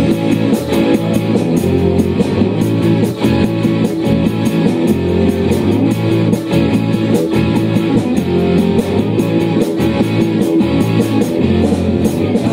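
Live rock band playing an instrumental passage: electric guitar and bass guitar over a steady, fast beat.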